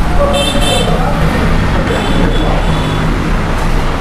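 Steady low background rumble like road traffic, with two short high-pitched horn-like toots, one just after the start and one about two seconds in.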